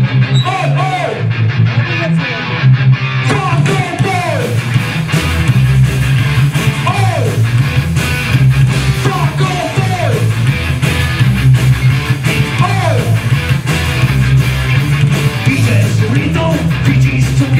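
Punk rock band playing live with distorted electric guitars, bass and drums in an instrumental stretch: a short guitar phrase comes round again about every three seconds, and the drums with cymbals come in about three seconds in.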